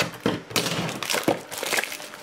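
Crinkling and clicking of a plastic-wrapped trading card pack box being handled in the hand, in short irregular crackles.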